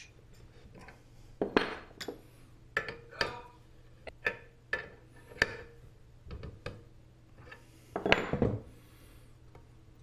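A steel wrench clinking and clicking against brass pipe fittings as they are tightened on a paint-tank pressure regulator: a dozen or so separate metallic clicks and knocks, with louder clatters about a second and a half in and around eight seconds.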